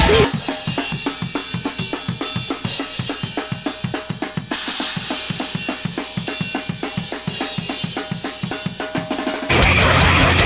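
Drum kit played on its own: fast, even bass-drum strokes with snare and cymbal hits over them. Near the end the full band comes back in, louder.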